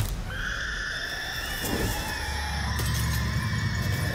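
Horror-film trailer sound design: a shrill, steady high-pitched tone held over a deep low rumble, starting just after the opening.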